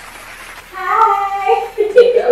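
A woman's high, drawn-out vocalizing, sliding up and down in pitch. It comes in about two-thirds of a second in, after a quieter moment.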